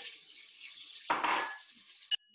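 Frozen vegetables going into a hot pan where vegetables are frying: a steady hiss, then a louder rush of noise about a second in, with light clinks of kitchenware.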